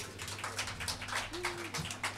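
Sparse applause from a small audience, the single claps distinct and irregular, several a second.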